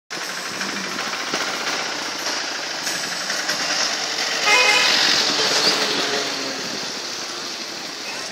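Steady road noise from a moving vehicle, with a vehicle horn sounding once, briefly, about halfway through, the loudest moment.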